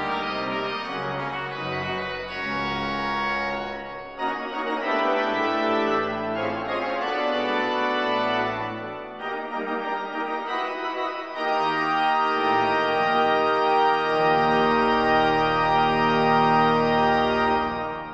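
1954 Aeolian-Skinner pipe organ playing sustained full chords over a deep bass line, the harmony changing every few seconds. The last chord is released at the very end.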